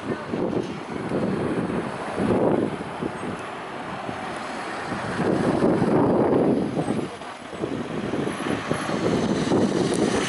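Outdoor street noise: a rushing din of road traffic that swells and fades every few seconds as vehicles go by.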